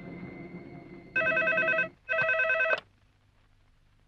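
Desk telephone ringing twice with a fast warbling ring, each ring under a second long and separated by a short gap. Soft background music fades out about a second before the first ring.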